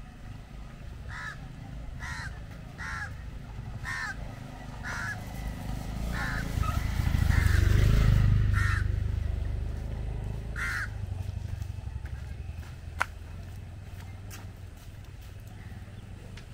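A crow cawing about eight times, roughly once a second at first and then more slowly. A low rumble swells to its loudest about halfway through and fades, and there is a single sharp click near the end.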